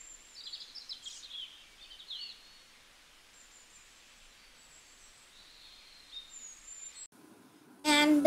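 Faint bird chirps over a steady background hiss, a few short high chirps in the first couple of seconds and thin high whistles later.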